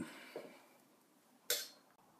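Near silence with a single short, sharp click about one and a half seconds in.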